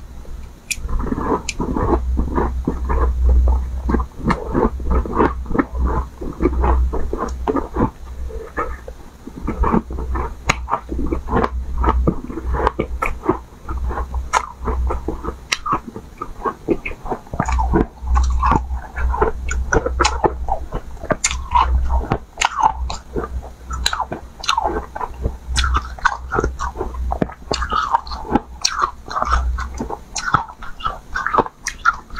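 A person biting and chewing hard ice close to clip-on microphones: a dense, continuous run of sharp crunches and cracks, with a low rumble under much of it. There is a brief lull about halfway through.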